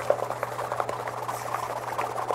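Wire whisk beating cookie-dough wet ingredients (brown sugar, brown butter, almond butter and miso) in a stainless steel mixing bowl: a rapid, steady run of scraping clicks as the whisk strikes the metal sides.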